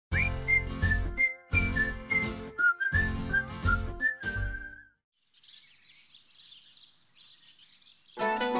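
Serial title theme music: a high, gliding, whistle-like melody over a heavy bass in three short phrases, ending about five seconds in. Faint bird chirping follows.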